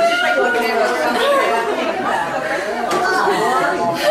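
Several people's voices talking over one another in a room: overlapping chatter with no clear words.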